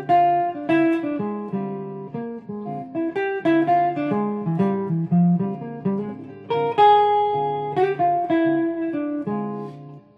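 Semi-hollow electric guitar playing a jazz line of many separate picked notes: B flat 7 ideas over a D minor 7 flat 5 chord.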